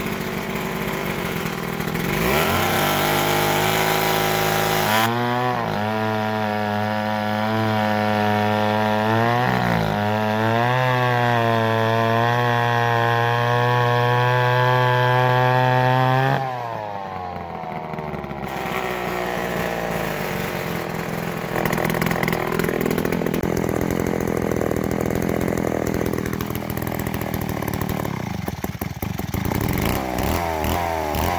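McCulloch gear-drive two-stroke chainsaw with a bow bar running at high revs and cutting through a log, its pitch dipping briefly twice under the load. About halfway through the level drops suddenly and the engine runs on rougher and less even.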